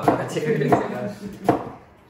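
Chef's knife chopping onion on a plastic cutting board: three sharp chops about three-quarters of a second apart.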